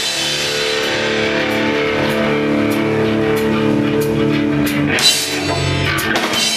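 A live rock band playing loudly: electric guitars ring out held chords over a drum kit with steady cymbal hits, and a sharp hit comes about five seconds in as the part changes.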